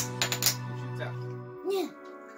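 A few sharp plastic clicks in the first half second from a small Pokémon Happy Meal toy as its back button is pressed to fire its disc, over background music with a held chord that drops away about one and a half seconds in.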